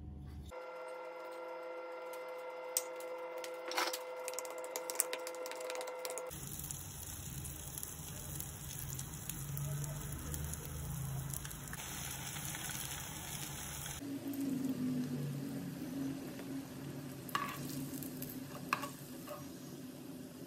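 Vada batter deep-frying in hot oil, sizzling steadily for several seconds in the middle. Before that, batter is stirred in a steel bowl, with a few sharp clinks over a steady hum.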